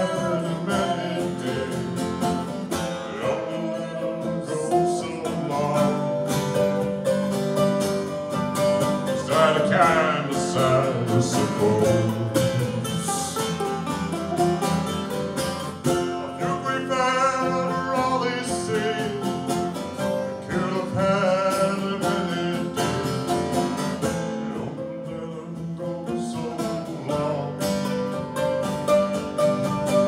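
A man sings a country-folk song live, backed by a strummed steel-string acoustic guitar and a mandolin.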